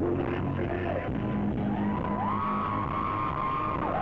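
Live rock band playing, with steady low bass notes under the mix. About two seconds in, a single high note slides up and is held until near the end.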